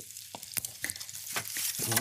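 Fat crackling and spitting in a frying pan: irregular sharp pops over a steady sizzle.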